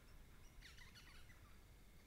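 A bird calling faintly: a quick cluster of short, sliding chirps from about half a second to just over a second in, over a faint steady high tone.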